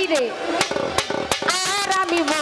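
A woman singing a Bengali Baul folk song through a stage microphone, her voice gliding between notes, with sharp drum and percussion strokes.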